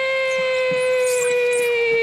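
A person's long, drawn-out cheer of "yeah", held on one high pitch and sagging slightly lower as it goes on.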